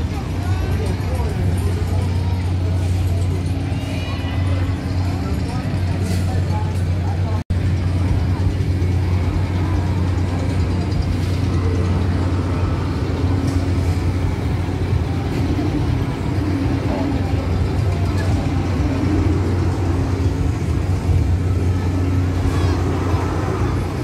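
Fairground midway ambience: crowd chatter over a steady low machine hum, with a momentary cut-out about seven seconds in.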